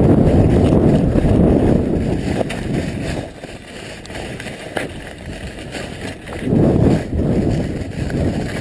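Wind buffeting a body-worn action camera's microphone as a skier runs fast downhill: a low rumble, loud for the first three seconds, easing off, then gusting up again briefly near the end.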